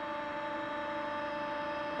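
A steady hum made of a few constant tones, with a light hiss underneath.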